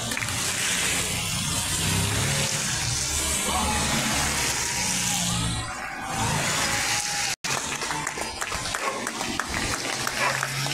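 Cycle-race team cars driving past close on a wet road: tyres hissing through the surface water over a low engine hum, one pass swelling and then sweeping away about five to six seconds in. Scattered clapping comes back near the end.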